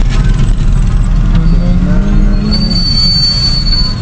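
Street traffic rumble, with a steady high-pitched squeal starting about halfway through.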